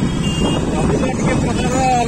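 Motorcycle engine running while under way, with wind rumbling on the microphone. A man's voice starts again near the end.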